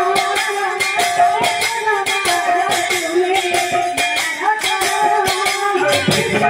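Live kirtan music: a held, wavering melody line over a fast, even stream of drum and jingling percussion strikes.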